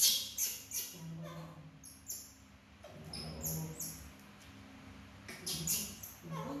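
Baby macaques squeaking: short, high-pitched chirps come in a quick cluster at the start and again near the end, and a few single squeaks in between glide down in pitch.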